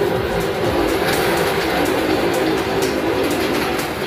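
Motorcycle circling the wooden wall of a tong setan (wall-of-death drum): a loud, steady rumble of engine and tyres on the planks that swells at the start and eases off near the end.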